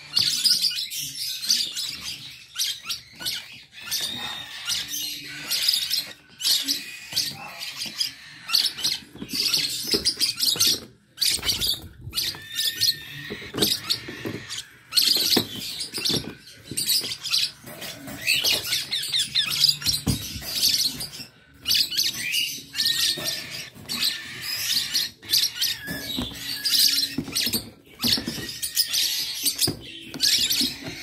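Many small caged birds chirping and twittering, rapid high calls overlapping almost without a break.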